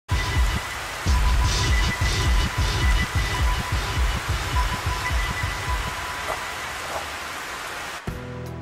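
Steady rain falling, a dense even hiss, over irregular low rumbling pulses that are loudest in the first few seconds, with a thin steady tone running through it.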